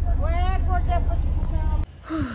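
A person's voice over the steady low rumble of a car engine running, heard from inside the car's cabin; both cut off abruptly near the end.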